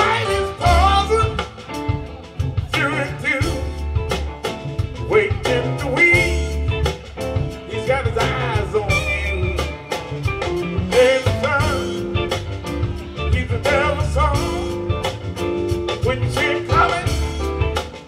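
Live blues band playing an instrumental passage of a slow blues: electric lead guitar lines with bent, wavering notes over bass, drums and keyboard.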